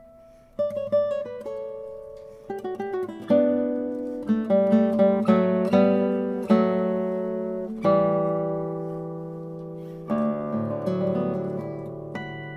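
Arcangel classical guitar played solo: a quick run of plucked notes, then a string of full chords, each left to ring and fade, the last one dying away slowly before a fresh cluster of notes near the end.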